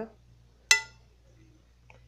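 A single short, ringing clink of tableware knocking together, about two-thirds of a second in, over a faint low hum.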